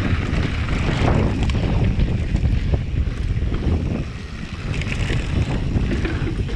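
Heavy wind noise on the camera microphone of a mountain bike riding fast downhill, with the tyres rolling over a dry dirt trail and short knocks and rattles as the bike goes over bumps.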